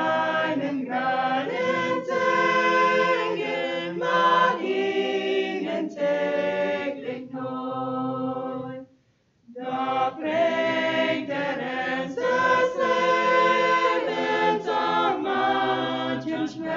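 Mixed choir of men's and women's voices singing a cappella in harmony. The singing softens about seven seconds in and breaks off for a short pause between phrases just before ten seconds, then comes back in full.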